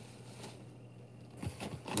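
Faint rustling and handling of packaged items, with a few soft knocks near the end, over a low steady hum.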